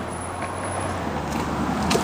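Steady road-traffic rumble and hiss heard inside a car cabin, slowly swelling toward the end, with a faint click or two of handling.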